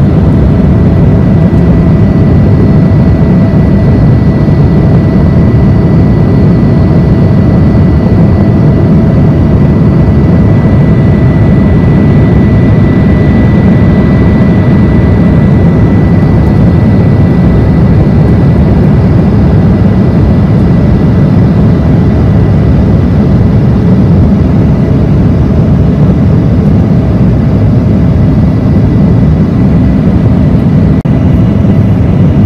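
Cabin noise inside an Embraer E175 regional jet climbing after takeoff: the steady low rush of its General Electric CF34 turbofan engines and airflow, with a thin steady whine on top.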